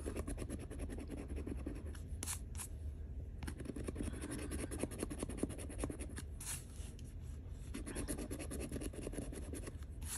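A coin scratching the coating off a scratch-off lottery ticket in rapid back-and-forth strokes, with a few louder scrapes among them.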